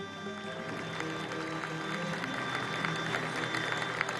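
Orchestra with violins playing a sustained instrumental passage, with audience applause building up over it from about a second in.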